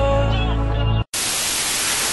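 Music with held notes for about the first second, cut off abruptly, then about a second of loud, even static hiss like an untuned TV, which stops suddenly.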